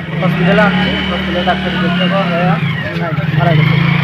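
A man speaking over the steady hum of a motor vehicle engine running close by, its pitch dipping a little past the middle and rising again near the end.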